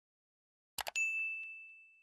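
A quick double click, like a mouse click, then a single bright bell-like ding that rings on and slowly fades: the click-and-chime sound effect of a subscribe and notification-bell animation.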